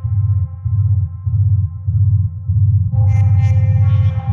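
Hardcore techno music: a steady, evenly pulsing bass under a held pitched tone. About three seconds in, a brighter, louder layer comes in over it.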